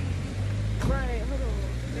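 Jeep Wrangler engine idling with a steady low hum. A sharp click comes just before the middle, and a voice is heard briefly about halfway through.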